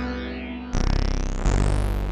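Charlatan virtual analog software synthesizer playing. A held note fades, then a new bright note starts about two-thirds of a second in, carrying a high whistling tone that dips and then climbs. Another note comes in about a second and a half in.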